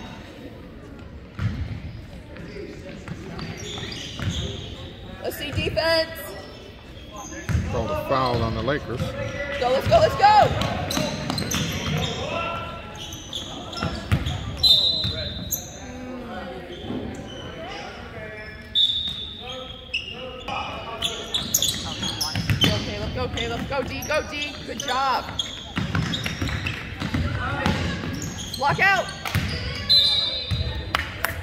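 A basketball bouncing on a hardwood gym floor during play, with voices of players and spectators shouting and chattering in an echoing gym.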